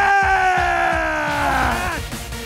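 An announcer's long, drawn-out shout into a microphone, a single call held for about two seconds and slowly falling in pitch before breaking off near the end. It finishes the call that starts the contest.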